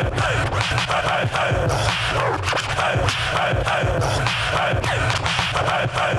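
Turntable scratching: a record pushed back and forth under the needle, giving quick rising and falling scratch sounds over a steady hip-hop beat.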